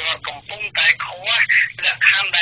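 Speech only: a voice talking continuously in Khmer, sounding thin, as over a phone line.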